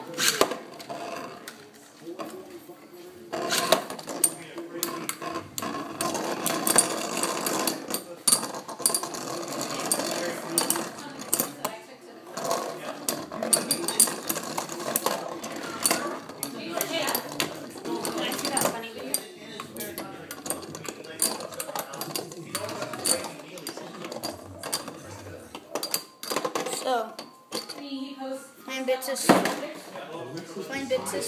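Flame Byxis and Basalt Horogium metal Beyblade spinning tops battling in a plastic stadium: a sharp launch snap at the very start, then a rapid, continuous clatter as the metal tops rattle and clash against each other and the stadium walls.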